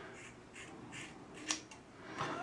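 Scissors snipping through hair: a few soft snips about every half second, then a sharper click about one and a half seconds in.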